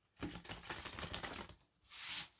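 A deck of tarot cards being shuffled by hand: a quick run of papery card clicks for about a second and a half, then a brief brush of cards near the end.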